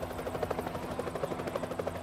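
Helicopter in flight, its rotor giving a fast, even beat over a steady engine hum.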